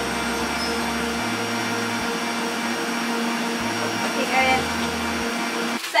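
Electric mixer whisking egg whites with sugar into meringue, a steady motor whir with the whisk churning in the bowl; it switches off just before the end.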